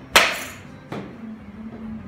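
A baseball bat hitting a ball: one sharp crack with a short ring, then a softer knock about three quarters of a second later.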